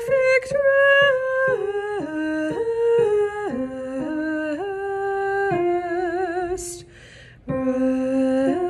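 A woman's solo voice singing a wordless alto line, held notes stepping up and down, with vibrato on a long note about six seconds in. She takes a quick breath near the end and starts the next phrase.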